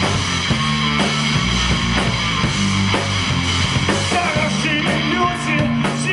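Live rock band playing loud punk-style rock: drum kit and electric guitars.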